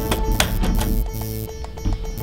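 Background music playing steadily, with a few sharp clicks in the first half second as a hard-drive tray is pushed home into its removable drive rack.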